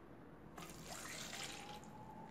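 Water poured from a cup into a stainless-steel pot, a faint splashing trickle that starts about half a second in.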